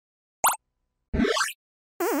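Cartoon water-drop sound effect: a short drip plop about half a second in, then a quicker-to-slower upward-gliding bloop lasting under half a second, about a second in.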